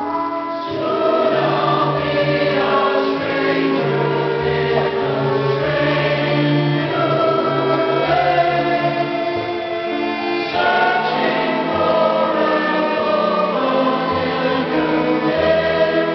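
A musical-theatre cast singing together in chorus, with instrumental accompaniment under them and a bass line that pulses in an even pattern.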